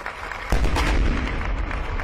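A sudden loud blast about half a second in, followed by a deep rumble that fades slowly, over scattered clapping from the audience.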